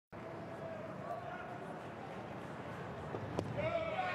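Ballpark crowd murmur with scattered voices, then a single sharp pop near the end as a pitched ball smacks into the catcher's mitt for a called strike.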